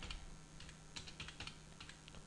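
Computer keyboard being typed on: a short run of faint, unevenly spaced keystrokes as a couple of words are typed.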